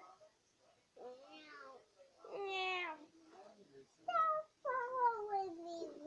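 A child's voice making wordless, drawn-out sung notes, about five of them, most falling in pitch, with the last one the longest.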